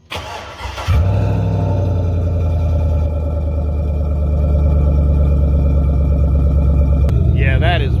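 A 2005 Chevrolet Silverado's 5.3-litre V8 cranks briefly on the starter, catches about a second in, then idles steadily and loud. It runs through a Thrush Rattler muffler with the catalytic converters removed.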